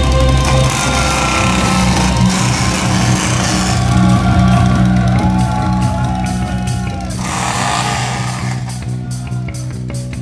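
Live hard-rock band's opening: sustained electric guitar tones sliding in pitch over a low, steady droning hum, played loud through the PA. Near the end the sound turns to a quick regular pulsing.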